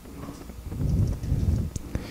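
Soft, low thumps and rustling of handling noise on a handheld microphone, in two short swells, with a few faint clicks.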